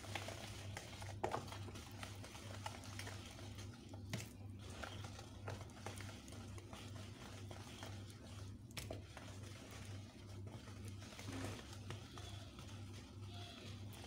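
Wire whisk stirring thick cake batter in a bowl: a faint, irregular mixing sound with occasional light clicks of the whisk against the bowl, over a steady low hum.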